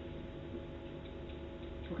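Marker on a whiteboard: a few short ticks and scratches of pen strokes in the second half, over a steady low room hum.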